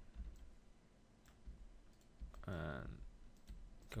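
A few faint clicks from a computer keyboard and mouse as shortcut keys are pressed and the mouse is worked, over a low hum.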